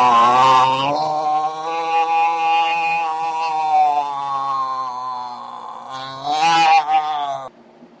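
A person's long, drawn-out moan held on nearly one pitch for several seconds, then a second, shorter moan that stops just before the end: someone moaning in a nightmare in their sleep.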